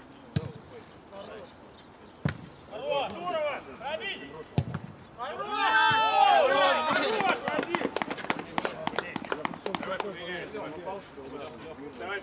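Football kicked hard on an artificial-turf pitch, a sharp thud, then two more kicks. Several men shout as a goal is scored, loudest about six seconds in, followed by a run of quick sharp clicks.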